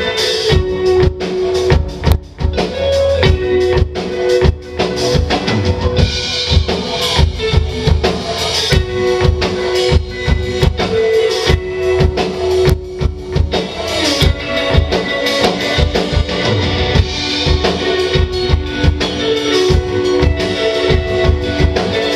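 Live rock band playing: two electric guitars, electric bass and a drum kit, with a steady, busy drum beat under held guitar notes.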